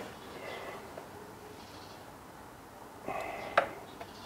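Mostly quiet workshop room tone. About three seconds in comes a brief murmured voice sound, then a single sharp click.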